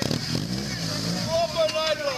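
Several people talking at once in a group, with a motorcycle engine briefly running underneath, its low hum rising and falling in the first second.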